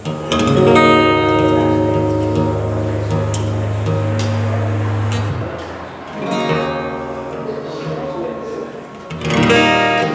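Acoustic guitar being tuned by ear: a chord strummed and left to ring for about five seconds, then strummed twice more.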